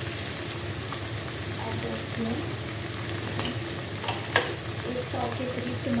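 Goat meat frying in hot oil in a metal wok, a steady sizzling hiss. A few sharp clicks cut through it, the loudest a little after four seconds in.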